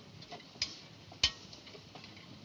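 A few sharp, irregularly spaced clicks and ticks over faint background hiss, the loudest a little past the middle.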